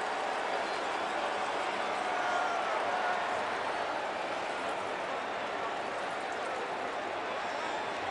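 Steady noise from a large stadium crowd at a football game, with faint voices or shouts rising out of it around two to three seconds in.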